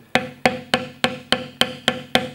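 Mallet striking a leather beveling stamp in a steady rhythm, about three and a half taps a second, as the beveler is walked along a cut line to press the leather down. Each tap is a sharp knock with a short ring.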